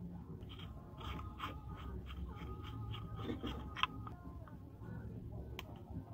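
Felt-tip marker squeaking and scratching in short strokes, about three a second, as it is drawn around an LED on a bulb's circuit board, with a sharp click near the end.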